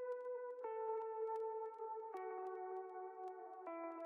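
Ambient electric guitar part played solo through an amp-simulator and effects chain, with the low end cut away: sustained notes ring and step down in pitch about every one and a half seconds, with faint picked attacks over them.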